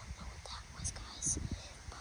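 A young boy whispering quietly, his hissing consonants standing out over a low rumble.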